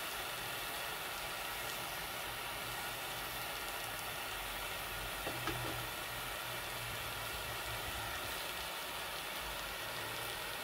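Burner flame under a porcelain crucible running with a steady hiss, driving the water of hydration off magnesium sulfate. A faint brief sound about five seconds in.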